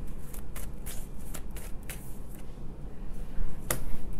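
A tarot deck being shuffled by hand: a quick, uneven run of light papery card clicks, with one sharper snap near the end.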